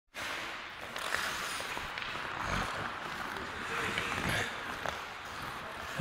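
Indoor ice rink during play: a steady scrape and hiss of hockey skates on the ice, with a few sharp clicks of sticks and puck and faint distant voices of players.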